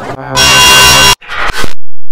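Loud, harsh electronic buzz held steady for under a second, then a shorter blip and an abrupt cut to silence.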